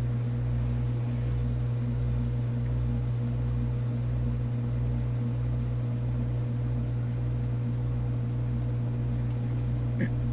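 Steady low electrical-sounding hum with a faint throb underneath, repeating a little under twice a second.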